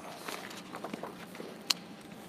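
Faint rustling and small ticks of thin Bible pages being leafed through, with one sharp click near the end.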